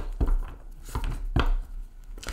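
A deck of oracle cards being handled on a table: two or three soft knocks, the clearest about a fifth of a second in and about a second and a half in.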